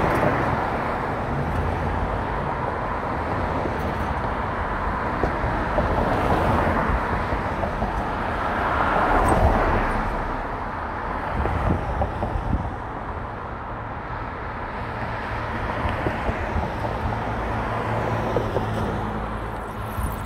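Steady road and traffic noise from a car driving in city traffic, tyres and engines running, with a brief swell in loudness about halfway through.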